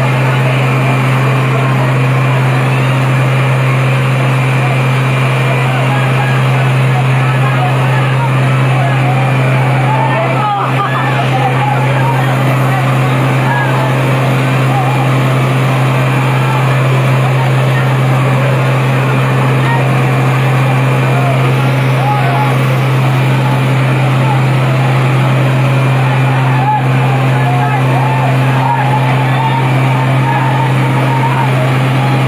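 A fire truck's engine running at a steady speed with a loud, unchanging low drone. Over it, a crowd of people shout and call to one another.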